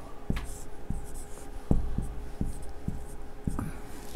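Marker pen writing on a whiteboard: a quick, irregular series of short strokes and taps of the tip against the board as the words are written out.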